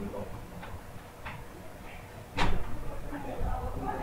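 A single sharp, loud bang about two and a half seconds in, preceded by a few faint clicks, over a low murmur of voices in the room.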